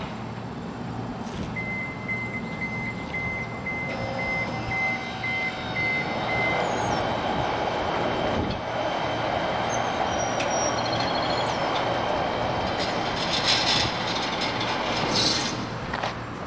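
HySecurity SlideDriver hydraulic slide gate operator running as the steel gate slides along, a steady mechanical noise. A high-pitched beeping at about two beeps a second sounds for the first few seconds, and there are a couple of louder clatters near the end.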